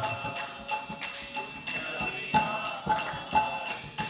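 Brass hand cymbals (kartals) keeping a steady kirtan beat, about three ringing strikes a second, with faint pitched accompaniment underneath between sung lines.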